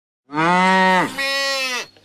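A cow mooing: one long moo that dips briefly about a second in and falls away at the end.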